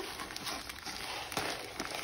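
Faint rustle of plastic shrink wrap being handled around a folio, with a couple of light clicks.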